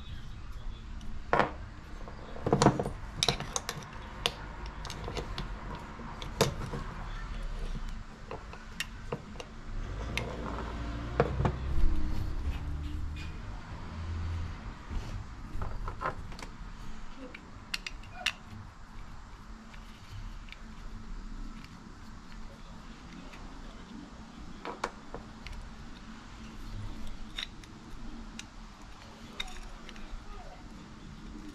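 Scattered small clicks, taps and rattles of a motorcycle handlebar switch housing and its wires being handled and fitted back together, with a few louder knocks about three seconds in and again about eleven seconds in.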